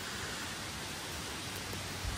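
Steady, even hiss of outdoor background noise in a pause between words, with no distinct events.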